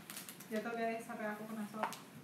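A woman's voice making one drawn-out, wordless vocal sound that lasts about a second, with faint clicks of handling at the start and near the end.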